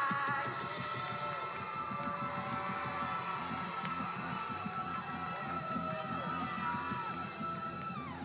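Live band playing an outro: a held chord over a low bass line that pulses about twice a second.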